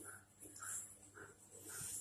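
Thick natholi (anchovy) curry boiling in a clay pot, faint soft plops of bursting bubbles about twice a second, with two short spatters of hiss.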